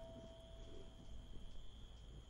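Quiet lull in soft background music: one held note fades out over the first second and a half, over a faint, steady high-pitched drone like crickets.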